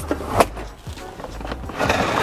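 The built-in pull-down blind of a camper-van window being drawn across the glass: a sharp click about half a second in, then a rasping slide along its track near the end.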